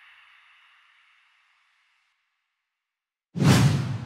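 Logo-animation sound effects: the ringing tail of a whoosh fades out over the first two seconds or so, then near silence, then a sudden whoosh about three and a half seconds in.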